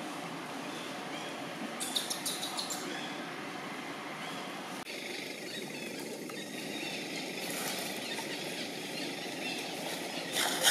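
Outdoor background ambience: a steady hum with short bursts of light crackling, about two seconds in and again around eight seconds. The background changes abruptly near the middle.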